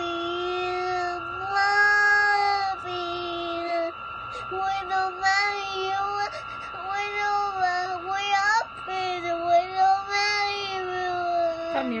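A cat crying in a run of long, drawn-out meows, about six in a row, each one to two seconds long and held at a nearly steady pitch with short gaps between. It is calling for its absent family.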